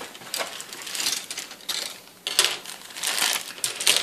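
Clear plastic bag crinkling and rustling in the hands as a plastic model-kit sprue is taken out of it, an irregular crackle of small clicks.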